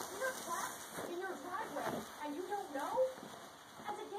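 People talking, their words indistinct.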